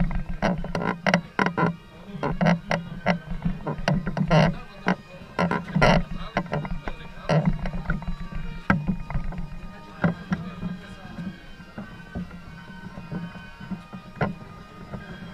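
Wooden carrying poles of a processional statue platform knocking and creaking as the bearers carry it, in quick irregular sharp knocks over a murmur of voices. The knocks thin out after about ten seconds, leaving faint band music.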